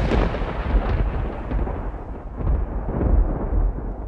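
A loud, deep rumbling noise with no clear pitch, rolling unevenly and growing duller as it fades near the end.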